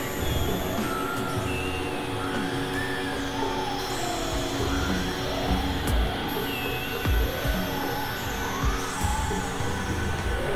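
Dense, noisy experimental electronic music: a droning wash with steady held tones, many short tones gliding up and down, and a few low thumps around the middle.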